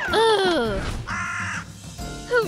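A voice wailing downward in pitch, then a single harsh crow caw about a second in, used as a spooky sound effect.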